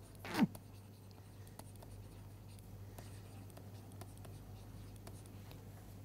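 Stylus writing on a tablet screen: faint scattered ticks and scratches of the pen tip, over a steady low hum. A brief voice sound comes just under half a second in.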